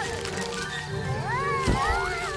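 Cartoon background music with a high, cat-like cry from an animated ant character that glides up and then down about a second in, and a low thump near the end.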